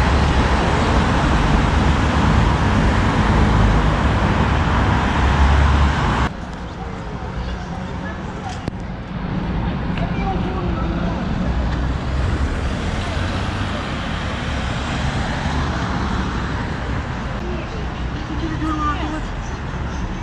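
City street traffic noise, loud and steady with a heavy low rumble, dropping abruptly about six seconds in to quieter street ambience with faint voices of passers-by.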